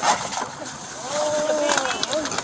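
A long, drawn-out cry from a person's voice about half a second in, rising and then falling in pitch, over rustling and scraping noise from the body-worn camera.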